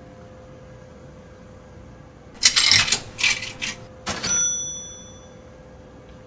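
A rattling metallic clatter lasting about a second, then a sharp clink that rings out with a bell-like ding and fades over about a second. A steady low hum sits underneath.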